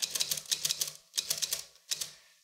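A We R Memory Keepers Typecast manual typewriter being typed on: quick runs of typebars clacking against the platen, with a short pause about a second in.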